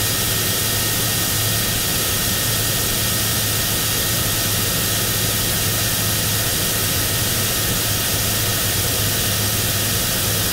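Dawn Aerospace Aurora spaceplane's rocket engine firing in a powered climb, heard through an onboard camera as a steady rushing noise with a low hum and a faint high whistle.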